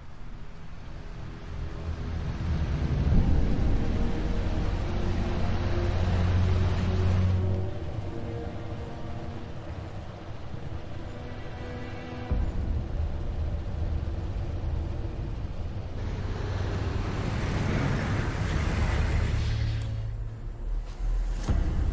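Film soundtrack: a dark music score of deep, steady drones under the low rumble of a heavy vehicle approaching. A rushing noise swells near the end.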